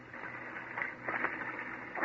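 Radio-drama sound effect of feet moving through grass and brush: a soft, crackling rustle.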